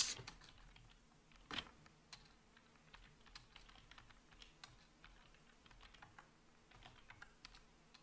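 Faint computer keyboard typing: scattered soft keystrokes, one a little louder about a second and a half in, as a terminal command is typed out.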